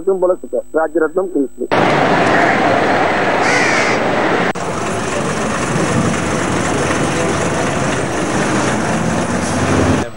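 Busy bus-stand noise of bus engines running and people talking, starting suddenly about two seconds in. A crow caws briefly a couple of seconds later, and an engine note rises near the end.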